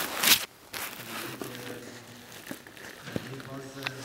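A man speaking haltingly with pauses, after a short, loud rustling burst at the very start.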